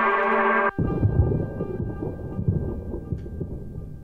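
A deep house track's chords play and cut off under a second in, leaving a thunder sound sample that rumbles low and slowly fades, with a few faint held tones above it.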